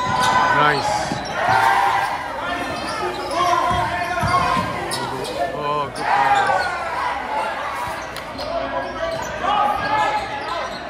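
Basketball dribbled on a hardwood gym floor, the bounces echoing in the large hall, amid players and spectators calling out throughout.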